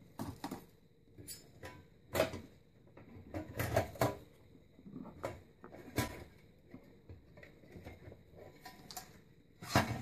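Irregular clicks, knocks and light metallic clatter of a sheet-metal circuit-board housing being handled and worked loose from a TV chassis. The louder knocks fall about two seconds in, around four and six seconds, and just before the end.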